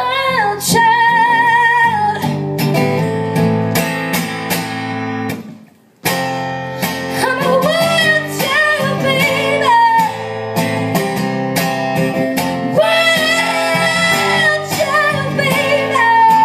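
Live female vocal sung into a microphone over strummed and plucked guitar. The music breaks off for a moment about a third of the way in, then the guitar and voice come back in.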